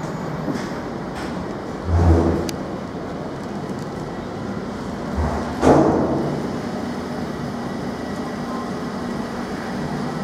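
Steady mechanical hum of an air-conditioning unit, with two brief low thumps and rushes of noise, about two seconds and about six seconds in.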